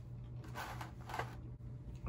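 Faint handling noises of small plastic model-kit parts being picked up and fitted between the fingers: a few light clicks and rustles over a steady low hum.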